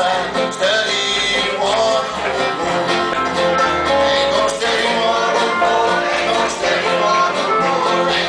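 A man singing a country gospel song with banjo accompaniment.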